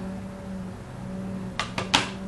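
Quiet room with a steady low hum, broken near the end by two or three short sharp clicks.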